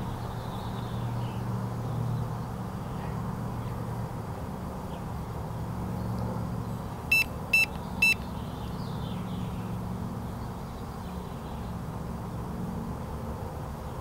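Handheld RF meter beeping three times in quick succession, short high beeps about half a second apart, over a steady low hum.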